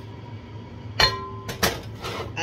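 Cast-iron skillet set down on an electric stove's coil burner: one sharp clank about a second in that rings briefly, followed by two lighter knocks.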